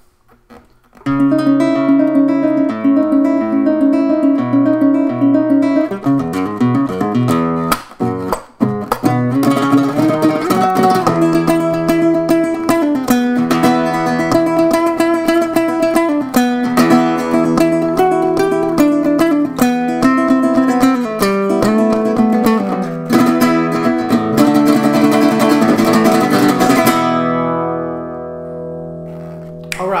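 Ortega Flametal nylon-string signature guitar played solo in a fast flamenco-metal style: quick runs of plucked notes and strummed chords with sharp percussive strikes, starting about a second in. It ends on a chord left ringing and fading over the last few seconds.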